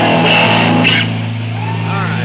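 Amplified band gear holding a steady low buzzing drone, an electric guitar and bass sustaining one note as the last song gets under way. Brief higher crowd sounds cut in during the first second.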